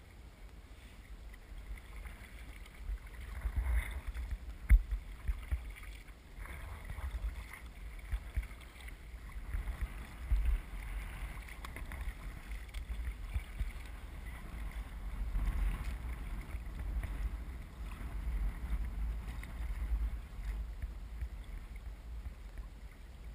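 Wind buffeting the microphone of a kayak-mounted camera, as a low rumble in uneven gusts. Every few seconds a paddle stroke splashes and water washes against the kayak's hull, and about five seconds in there is a single sharp knock.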